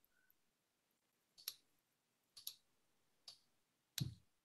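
Four faint, sharp computer clicks about a second apart, from a mouse and keyboard in use, heard through a video-call microphone.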